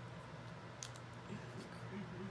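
A few faint, sharp clicks of small objects being handled, over a low steady room hum.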